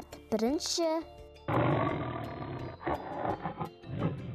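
A big cat's roar sound effect, lasting about two seconds from around a second and a half in, played for a cartoon cheetah.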